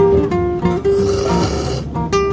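Acoustic guitar background music in flamenco style, with a long, hissing slurp of ramen noodles from about one second in until near the end.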